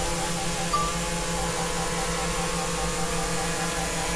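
A small quadcopter drone's motors and propellers spinning, a steady hum made of several pitches at once.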